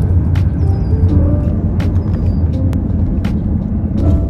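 Steady low rumble of road and engine noise inside a moving car's cabin, with a few sharp clicks over it and faint music underneath.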